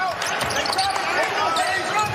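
Court sound of a basketball game: a basketball bouncing on the hardwood floor, with players' voices calling out faintly.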